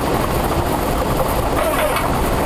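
Lottery ball draw machine running with a steady loud whir while the plastic balls tumble in its clear mixing chambers, as the third ball is drawn.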